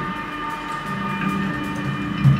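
Droning electric bass and electronics in free-improvised music: several steady held tones, with low sustained bass notes entering about a second in and no drum strikes.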